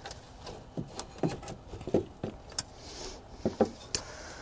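Plastic coolant overflow reservoir knocking and clicking as it is worked off its mounting clip and lifted out: a scattering of short knocks and clicks, spread through the whole stretch.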